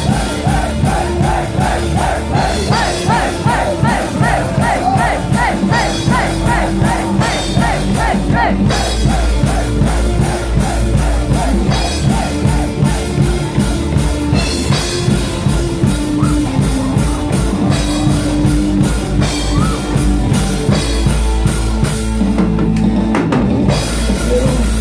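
Heavy metal band playing live and loud: distorted electric guitars over fast, steady drumming, with a quick repeating guitar lead line in the first few seconds. The band drops out briefly just before the end, then comes back in.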